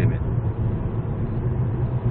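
Steady in-cabin road and engine noise of a Hyundai Avante MD cruising on a highway: a low even hum under a smooth rush of tyre and wind noise.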